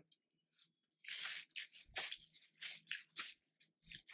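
Paper napkin being handled and torn: a run of short, irregular rustles and rips starting about a second in, fairly quiet.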